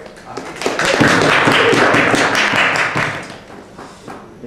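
A small audience clapping: a dense patter of hand claps that swells about a second in, holds for a couple of seconds and fades out shortly after the three-second mark.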